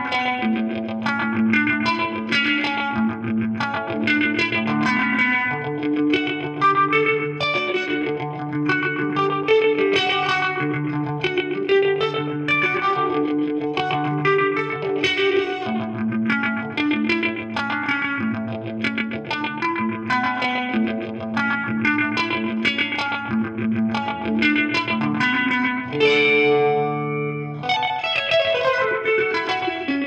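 Fender Stratocaster electric guitar played through an MXR Phase 90 phaser set at about 11 o'clock and a delay pedal: a continuous run of picked arpeggio notes over held bass notes, with a brief change of chord near the end.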